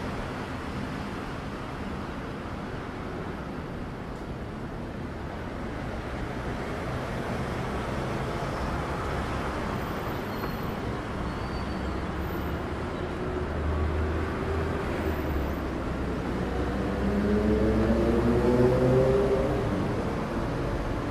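City street traffic: a steady hum of cars and taxis on a busy road. A deeper engine rumble builds in the second half, and near the end a vehicle engine accelerates past, its pitch rising as it gets louder.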